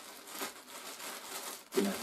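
Plastic packaging crinkling as a packet is handled and opened.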